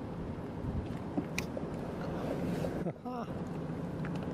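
Wind buffeting the microphone: a steady low rumble and hiss, with a single sharp click a little over a second in. A man's voice briefly near the end.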